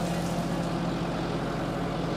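Flatbed tow truck running with a steady low hum while a small car is winched up its ramps onto the bed.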